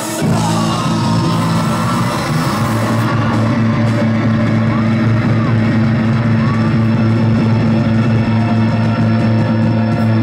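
Live rock music played loud through amplifiers: electric guitar holding a low chord that rings steadily through, with a few short sliding notes above it.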